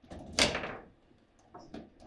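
Foosball table in play: one loud sharp clack of hard plastic and metal about half a second in, then a few fainter clicks near the end.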